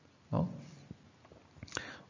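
A pause in a man's narration, with only mouth and breath sounds: a short low vocal sound about a third of a second in, a few faint mouth clicks, and an in-breath near the end.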